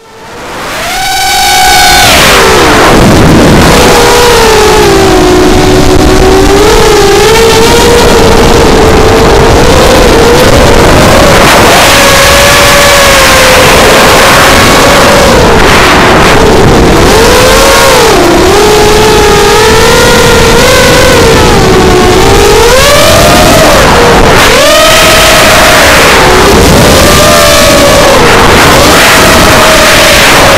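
Bantam 210 racing quadcopter's brushless motors and propellers whining close to the onboard camera, the pitch rising and falling constantly with the throttle, over rushing air noise. The sound fades in over the first two seconds.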